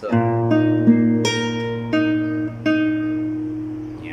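Nylon-string classical guitar fingerpicked in an arpeggio: a bass note rings under about six single plucked notes, dying away near the end.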